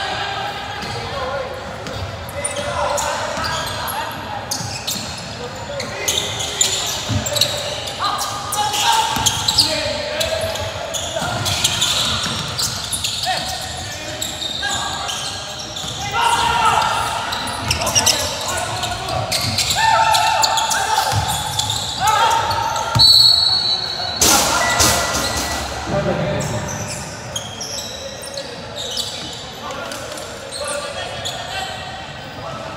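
Basketball game in a large echoing gym: a ball bouncing on the hardwood court amid scattered knocks and footfalls, with players and onlookers calling out over it.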